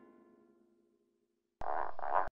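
A cartoon musical sting, a struck chord, fades out in the first half second. After a silent pause, a cartoon dog lets out a short yelp near the end.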